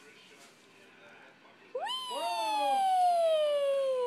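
A dog's long, drawn-out whining howl starting a little under two seconds in: its pitch jumps up sharply, then slides slowly downward. It is the jealous dog crying for attention.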